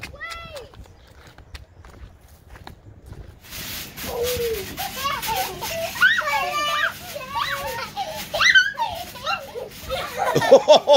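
Several young children shouting and squealing at play, starting about three and a half seconds in after a few seconds of faint clicks.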